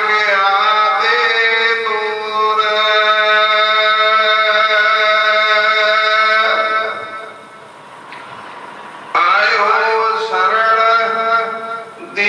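A man chanting a Gurbani hymn in a slow, sung style, sliding up into long held notes. One drawn-out phrase lasts about six seconds, there is a brief lull around eight seconds in, and a new phrase starts about nine seconds in.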